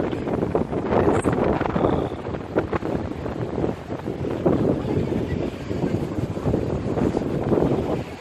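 Wind buffeting the phone's microphone in uneven gusts, a dense low noise.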